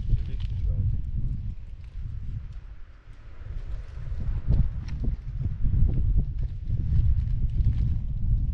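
Wind buffeting the camera's microphone in gusts, a low rumble that eases briefly about three seconds in, with scattered small clicks and taps over it.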